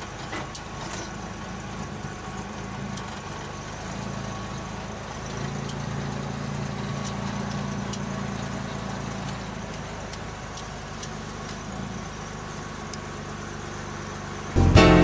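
A 1954 Chevrolet 210's inline-six engine running as the car is driven, heard from inside the cabin, on its freshly rebuilt carburetor. It grows louder about five seconds in and settles back toward the end.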